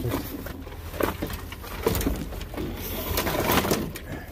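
Handling noise as a large black plastic nursery pot is shifted and bumped into place on a van's cargo floor: irregular knocks and scraping, with cloth rubbing against the microphone.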